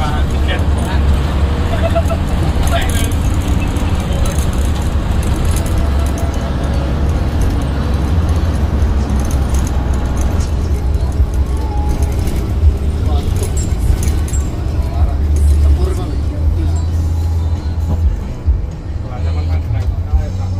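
Hino AK8 bus engine and road noise making a steady low drone inside the moving cabin, with music and voices playing over it.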